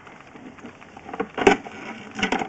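Sewer inspection camera's push cable being pulled back through the pipe: a steady scraping rustle with a sharp knock about one and a half seconds in.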